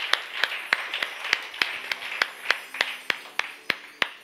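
A man clapping his hands in a steady, even rhythm, about three claps a second.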